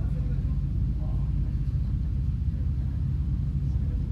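Lexus LS500 F Sport's twin-turbo V6 idling with a steady low rumble.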